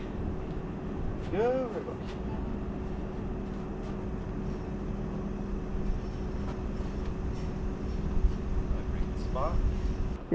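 Faint knocks of a welded steel frame being carried and set down on grass, over a steady mechanical hum. A short voice-like sound comes about a second and a half in.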